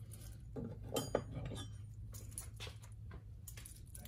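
Light metal-on-metal clinks and rattles as a heavy stainless-steel link-bracelet watch and a steel combination wrench are handled, a scattered run of sharp clicks over a low steady hum.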